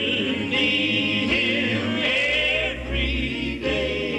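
Male gospel vocal quartet singing sustained notes in close harmony, the voices wavering with vibrato.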